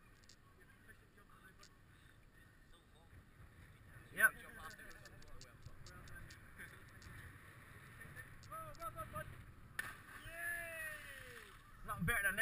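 Yells from people at a bridge jump. There is a short loud shout about four seconds in and a few brief calls later, then a long yell that rises and falls in pitch over the last two seconds as a jumper drops from the bridge toward the water.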